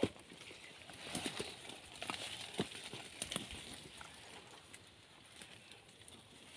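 Faint rustling with scattered light clicks and knocks, a few close together about a second in and more between two and a half and three and a half seconds in: someone moving about in dry leaf litter and brush.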